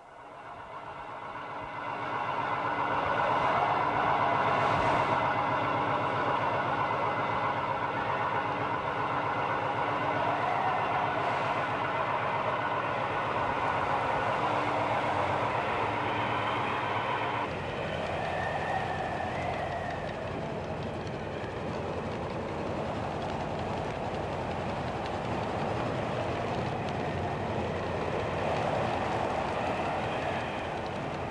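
Fishing launch's engine running steadily with a fine, even rhythm. Its sound shifts abruptly a little over halfway through.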